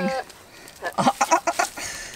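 Goats making a quick run of short, clucking, sputtering sounds about a second in. These are the funny calls of a doe in heat courting a herdmate.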